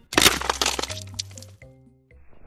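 Logo-reveal sound effect: a sudden crackling hit just after the start, with a low musical tone beneath it, fading away over about a second and a half.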